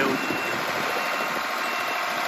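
Ford tractor engine running steadily as it pulls a loaded gravel cart across the field.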